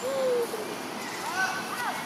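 Long-tailed macaques giving short, high-pitched coo calls: one slightly falling call at the start and a few arched calls past halfway, over a steady background noise.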